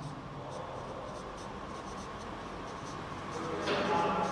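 Marker pen writing on a whiteboard, a run of short strokes.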